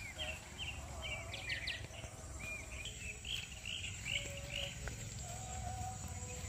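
Small birds chirping: short arched calls repeated a few times a second, over a faint steady high-pitched insect drone and a low rumble.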